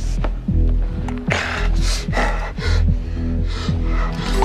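Tense film score with a low drone and short falling notes repeating about three times a second, over a person's rapid, ragged gasps for breath.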